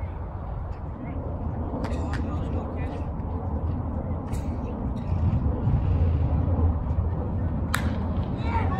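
Ballfield ambience: a steady low rumble with faint distant voices, and one sharp crack near the end.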